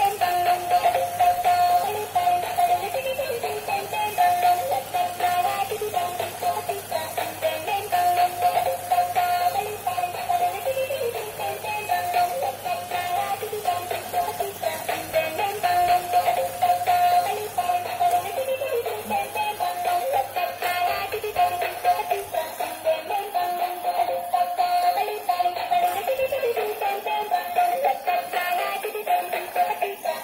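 Dancing robot toy's built-in electronic tune playing through its small speaker: a repeating, synthesised melody that loops without a break.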